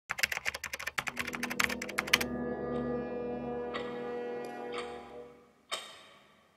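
Rapid mechanical clicking, like a clock ticking fast, about ten a second, stopping after about two seconds. A sustained ringing chord follows and fades away over about three seconds, then a single short click.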